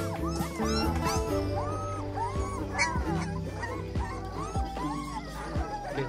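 Young puppies whimpering and yipping in short, rising-and-falling cries, over background music with held notes.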